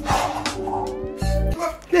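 Background music with a cat meowing over it, and a brief rush of noise right at the start.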